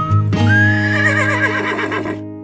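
Short logo jingle ending in a horse whinny: a rising note about half a second in, then a quavering call that falls in pitch, over held music notes.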